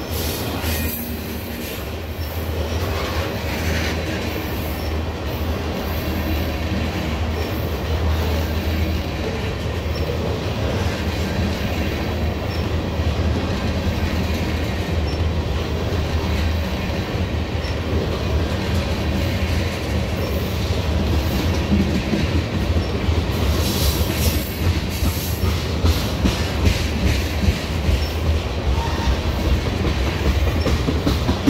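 Tank cars of a freight ethanol train rolling past close by: a steady rumble of steel wheels on the rails with a clickety-clack over the rail joints. The sound grows a little louder and more clattering over the last several seconds.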